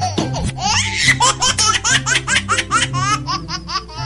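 Background music with a quick run of laughter over it, the laughs rising in pitch at about five a second, from about half a second in until near the end.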